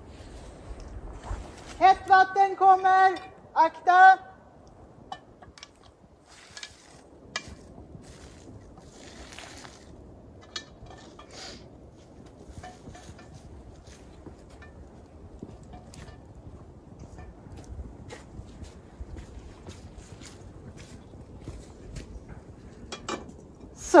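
A woman shouts a long, held warning call, "Hot water, watch out!", about two seconds in, then hot water from an iron cooking pot is poured out onto the ground, faint beside the shout, with light clinks of the pot.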